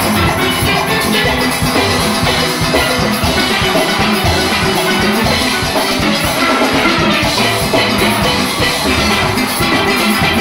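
A full steel orchestra playing live: many chrome steelpans sounding together, from high tenor pans down to bass pans, over a driving drum and percussion beat.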